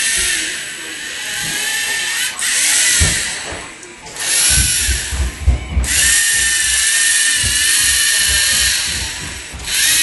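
Lego Mindstorms NXT servo motors whining high as the pen-drawing robot drives. The whine comes in several runs, stopping and starting again as the robot draws each stroke of the letter, with low knocks in the middle.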